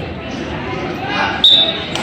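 Referee's whistle blown once about one and a half seconds in, a short steady high tone that restarts the wrestling bout, over voices in a gym.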